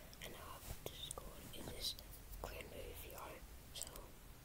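A person whispering in short breathy bursts, with a few faint clicks.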